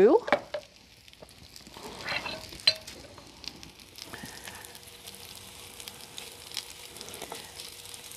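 Corn fritters sizzling steadily in shallow oil in a skillet, with a few short clicks of the spatula against the pan about two seconds in.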